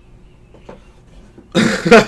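Quiet room tone with a couple of faint ticks, then about one and a half seconds in a man bursts into a short, loud laugh.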